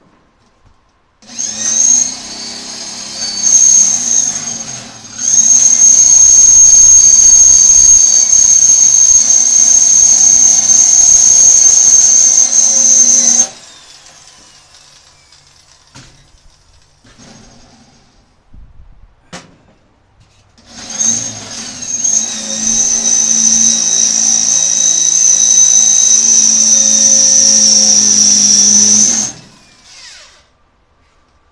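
Cordless drill drilling into steel. It gives a steady high whine. About a second in it starts and stops a few times, then runs steadily for about eight seconds. After a quiet pause with a few clicks it runs again for about eight seconds near the end.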